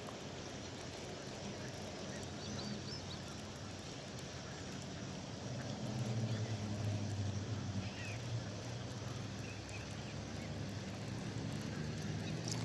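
A steady low engine hum, growing louder about halfway through and again near the end, over faint outdoor background noise.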